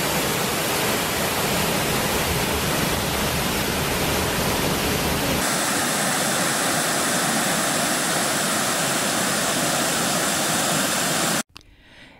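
Steady rush of a waterfall and cascading creek water. About five and a half seconds in, the sound changes to a thinner, brighter rush of a different cascade, and it cuts off suddenly just before the end.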